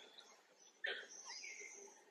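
Birds calling faintly in the surrounding forest canopy: quiet at first, then a short chirping call about a second in that trails off.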